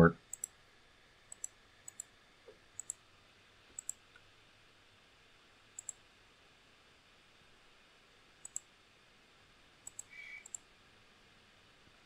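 Faint computer mouse clicks, mostly in quick pairs, scattered about a dozen times at irregular gaps of one to three seconds.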